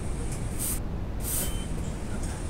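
Two short hisses of an aerosol smoke-detector test spray, a little over half a second apart, sprayed into an oil mist detector head's path to trigger it. A steady low rumble runs underneath.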